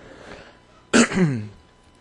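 A man briefly clears his throat once, about a second in, with a short falling voiced grunt.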